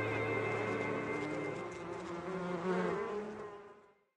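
Bees buzzing: several wavering hums that fade out near the end.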